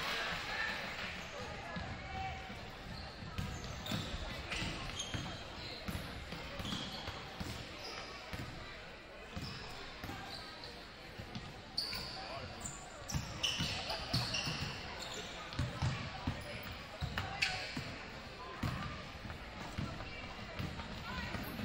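Basketball being dribbled on a hardwood gym floor, with repeated thuds, sneakers squeaking from time to time and spectators' voices in a large gym.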